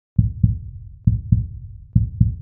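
Heartbeat sound effect: pairs of low, deep thumps, lub-dub, about one pair a second, each thump fading quickly.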